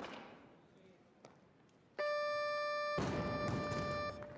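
Steady electronic buzzer tone, the referees' "down" signal for a good lift, starting abruptly about halfway in and lasting about two seconds. About a second after it starts, crowd noise from the arena joins it.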